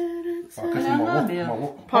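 A person's voice humming a steady held note, which about half a second in turns into wordless sing-song voicing that rises and falls.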